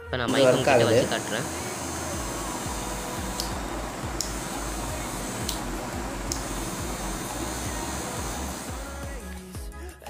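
Homemade mini drill with a 12-volt brushed DC motor running steadily, its bit spinning in a small brass chuck. A few faint clicks come through the middle of the run. Music with a voice is loudest in the first second or so.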